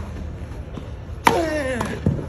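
A tennis ball struck hard by a racket about a second and a bit in, followed at once by a short grunt that falls in pitch, with a small knock shortly after.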